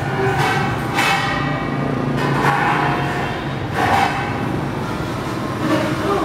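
Stainless steel stools clanking as they are picked up, set down and scraped on a tiled floor: several metallic knocks, each ringing on briefly, with a longer clattering stretch near the middle.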